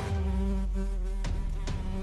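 Buzzing of a housefly as a sound effect, a steady drone over a low bass, breaking off a little over a second in; a few sharp clicks follow.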